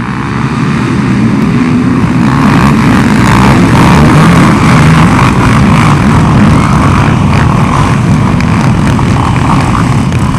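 A pack of racing quads (ATVs) accelerating from the start, many engines revving hard together; the sound swells over the first second and stays loud as the pack rides past on the dirt track.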